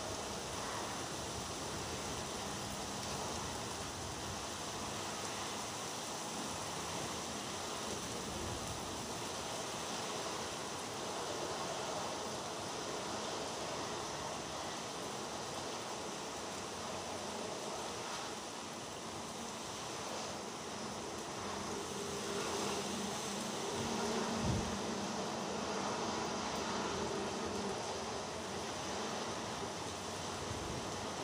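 Steady outdoor weather noise of rain and wind over the sea with surf. A faint low hum joins it about two-thirds of the way through and fades near the end.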